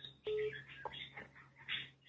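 Faint voice over a phone call on speaker, with a brief steady tone near the start.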